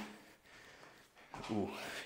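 A man's speech trails off, a second of quiet room tone follows, then a drawn-out "ooh" with rising pitch as he feels his joints cracking in a stretch.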